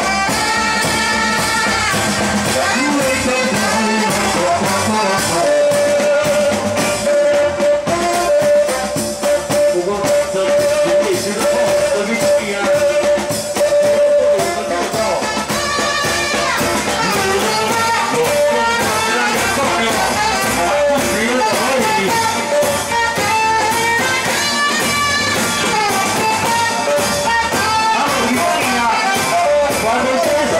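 Live festival band music: a singer with saxophones and drums. One note is held steady for several seconds in the middle.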